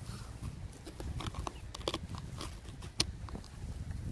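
Phone being handled and set down in snow: irregular crunching and clicking of snow and the handset, over a low handling rumble, with one sharper click about three seconds in.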